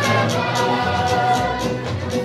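Live Transylvanian folk dance music playing for a circle dance, with a steady beat of about three strokes a second.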